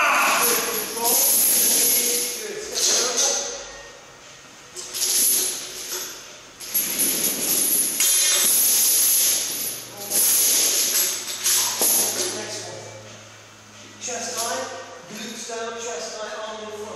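Steel chain rattling and clinking as it is handled and fastened to a medicine ball, in several jangling bursts of a second or so each.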